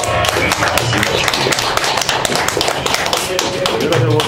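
Audience applauding, with voices calling out among the clapping.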